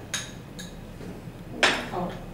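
Small glass bowls clinking on a tiled table: a light knock just after the start and a louder glass-on-glass knock near the end as an emptied spice bowl is set down onto another bowl.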